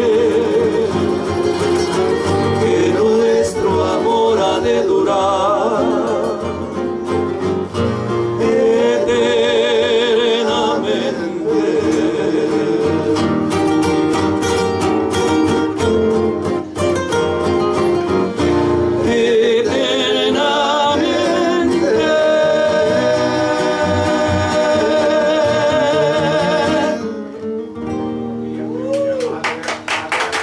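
Trio of acoustic guitars strumming and picking while men's voices sing with vibrato. The song ends about 27 seconds in and the last chord fades.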